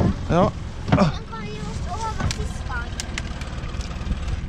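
Small Yamaha outboard motor running steadily, driving the boat through the water, with a short word spoken near the start.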